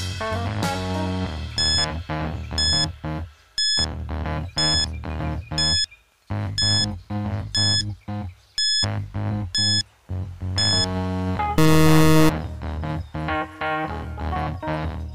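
Background music under a quiz countdown timer: a short high electronic beep once a second, ten times, then a loud electronic tone lasting under a second, about twelve seconds in, marking time up.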